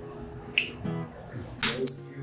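Finger snaps, one about half a second in and two close together near the end, over background guitar music.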